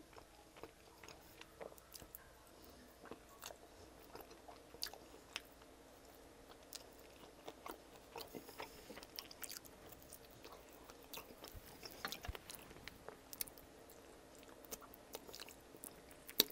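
Faint, close-miked chewing and mouth sounds of eating saucy chicken wings: a scattered string of short wet smacks and clicks as the meat is pulled off the bone and the fingers are licked.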